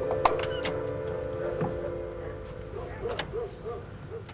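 A sustained soundtrack chord fades out, then a bird gives a quick series of short hooting calls, with a few sharp clicks in between.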